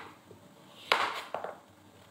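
Kitchen knife cutting through raw pumpkin and knocking on a plastic cutting board: one sharp knock about a second in, with a lighter one just after.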